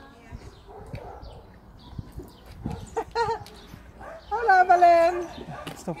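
Two pitched animal cries: a short wavering one about three seconds in, then a longer, louder one that falls slightly in pitch about a second later.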